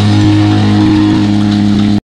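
The band's final low note held steadily over the ringing of a crash cymbal fading away after the last drum hits; the sound cuts off suddenly at the end.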